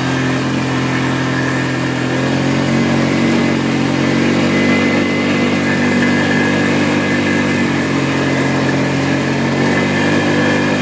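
ATV engine running steadily under way on a trail, its pitch and loudness rising a little about two to three seconds in, then holding.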